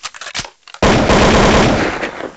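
A few short scattered clicks, then about a second in a sudden loud burst of rapid crackling noise that lasts over a second before fading.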